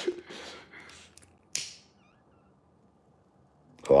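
A man breathing out close to the phone microphone, with one short sharp puff about a second and a half in.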